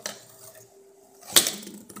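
One sharp clack of a plastic fidget spinner striking a glass tabletop, about a second and a half in, after a faint steady hum.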